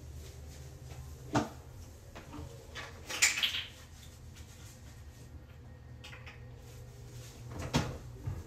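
Knocks and clatter from a toilet being cleaned by hand: a sharp knock a little over a second in, a louder clatter with a brief rustle about three seconds in, and another knock near the end, over a low steady hum.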